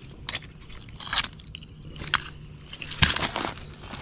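Scattered crunches and clinks of broken glass and rubble being shifted, a few sharp ones spread through the first two seconds and a denser cluster about three seconds in.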